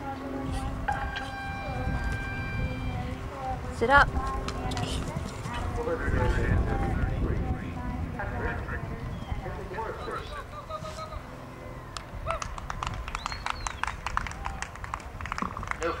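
A show-jumping horse cantering on grass, its hoofbeats under steady wind noise on the microphone, with a sharp knock about four seconds in. A run of quick claps, like spectators applauding a clear round, fills the last few seconds.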